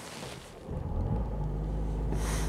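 Mercedes-AMG A45 S's 2.0-litre turbocharged four-cylinder engine starting from cold, catching a little under a second in and settling into a steady low idle, heard from inside the cabin.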